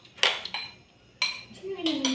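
Metal spoons clinking against ceramic plates and bowls during a meal, three sharp clinks about a second apart. A person's voice comes in near the end.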